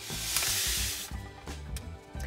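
A hiss for about a second as powdered caramel sauce mix is poured from its pouch into a saucepan of hot melted butter, then fading, over background music.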